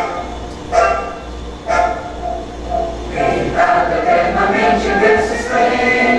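Recorded orchestral anthem playing in a hall, sustained chords at first. From about three seconds in, a crowd of voices joins in singing along.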